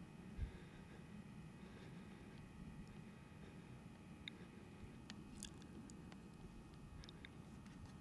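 Near silence: faint outdoor quiet with a low rumble of camera handling noise, one soft thump about half a second in, and a few faint high ticks in the second half.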